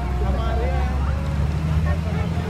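Many voices of a roadside crowd chattering over a steady low rumble.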